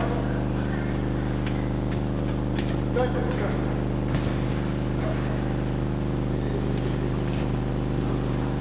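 A steady low electrical hum made of several even tones, with faint distant voices and a few soft knocks.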